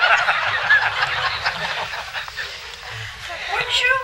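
Studio audience laughing: a dense burst of many voices that peaks at the start and dies down over the next couple of seconds, with a single voice near the end.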